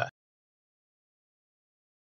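Digital silence: the sound track goes dead after a voice cuts off at the very start.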